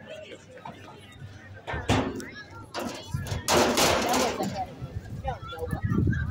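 A couple of sharp bangs about a second apart, then a rush of noise lasting just under a second, among voices.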